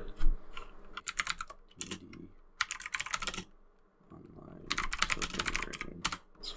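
Typing on a computer keyboard: a sharp click just after the start, then three quick runs of keystrokes about a second or more apart as a search query is typed out.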